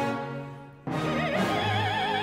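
Opera: a soprano singing with wide vibrato over the orchestra. A held note fades away, and just under a second in a new phrase starts abruptly and climbs in pitch.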